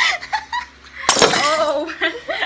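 Young women laughing and squealing, with a loud, sudden crash-like burst about a second in that lasts most of a second.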